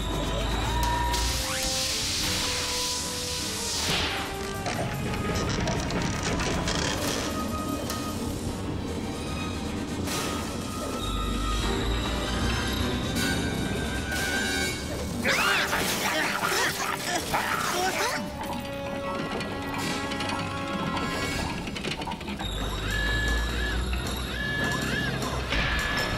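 Cartoon action soundtrack: background music under mechanical sound effects of heavy robot machinery, with crashes, two bursts of rushing noise and spells of deep rumble.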